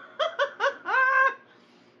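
A woman laughing: three quick bursts of laughter, then one longer, drawn-out laugh about a second in.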